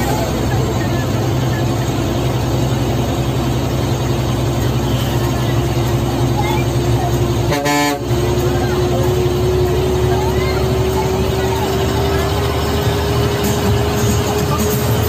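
Ashok Leyland bus's diesel engine running under way, heard from the driver's cabin over road noise, with a steady whine that slowly rises in pitch. The sound dips briefly a little over halfway through.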